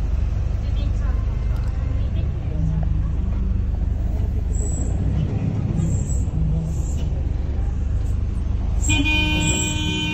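Steady low engine and road rumble heard from inside a moving city bus. Near the end a vehicle horn sounds, held for about a second.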